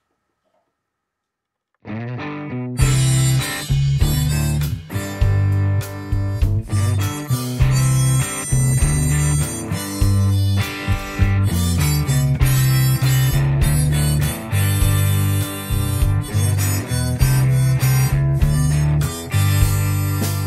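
Rock music with a harmonica over electric guitar and a prominent bass guitar line, starting suddenly after silence about two seconds in.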